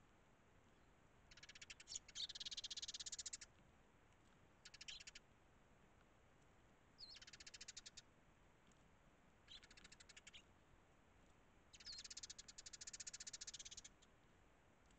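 Eurasian tree sparrows chattering in five bouts of rapidly repeated chirps. The longest bouts come about two seconds in and again near the end.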